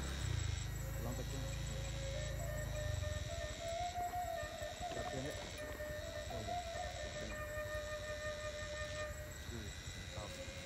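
Hydraulic excavator at work: a low diesel engine rumble that drops away about three seconds in, under a steady high-pitched hydraulic whine that rises slightly now and then as the machine takes load.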